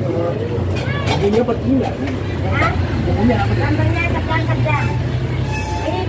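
Steady low rumble of a motor vehicle engine, with people talking over it.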